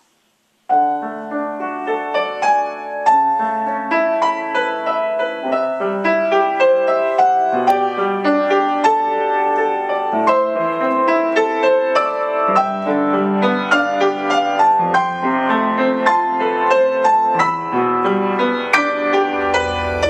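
Upright piano played solo, a lively passage of quick notes that starts just under a second in and runs on without a break.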